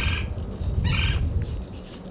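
Wind buffeting the microphone as a low, uneven rumble that dies down toward the end, with one short higher-pitched sound about a second in.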